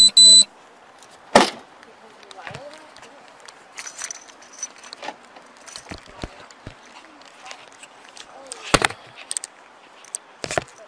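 Body camera's audio cutting in after its silent pre-record buffer, opening with a short loud electronic beep. Then an officer's gear rustles and clicks as he moves, with two sharp knocks, one about a second and a half in and one near the end.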